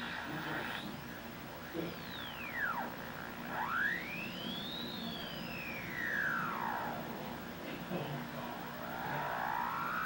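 Electronic whistling tones that glide slowly down and up in pitch, each sweep lasting a second or two, with two sweeps crossing each other at one point.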